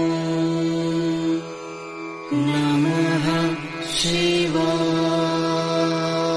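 Mantra jaap chanted in long, held notes. The held note drops away briefly before two seconds in, a wavering phrase with a short hiss follows, and then the steady held note returns.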